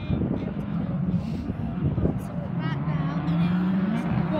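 Distant British Touring Car race cars running on the circuit, their engine note steady and then rising in pitch near the end as a car accelerates.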